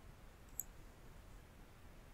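A single computer mouse click about half a second in, choosing a menu item, over near-silent room tone.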